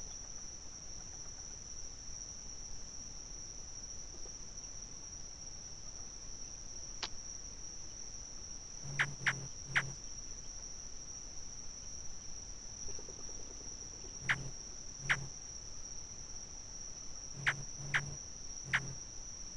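A steady, high-pitched chorus of crickets trilling without a break, with short sharp chirps in clusters of two or three about halfway through and again near the end.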